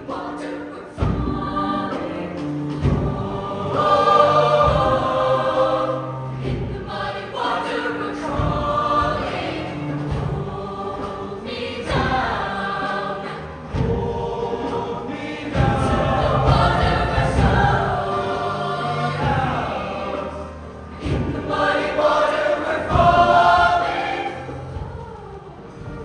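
Show choir of mixed male and female voices singing in full ensemble over an instrumental backing, the music swelling and dropping in loudness from phrase to phrase.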